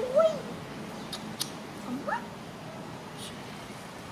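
Baby macaque calling: a short arching squeal right at the start, then a single call that rises sharply in pitch about two seconds in. A couple of faint clicks come just after the first second.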